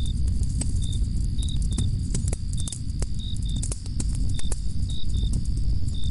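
Night forest ambience: crickets chirping in short, irregular bursts over a steady high trill, with scattered sharp crackles like a campfire and a continuous low rumble.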